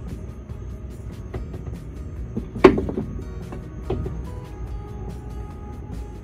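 Soft background music with two knocks of the wet painted canvas being tilted and set against the spinner table: a sharp one about two and a half seconds in and a lighter one about a second later.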